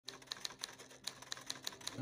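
Quiet typewriter key clicks, about five a second and slightly irregular, a typing sound effect for on-screen title text, with faint low music tones beneath.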